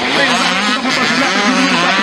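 Two-stroke dirt bike engines running as the bikes race around the track, a steady drone under a man's commentary.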